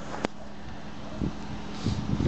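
Outdoor background noise with wind rumbling on the microphone, a single sharp click a quarter of a second in, and the low rumbling growing stronger near the end.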